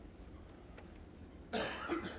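Quiet hall ambience, then a person coughs sharply about a second and a half in.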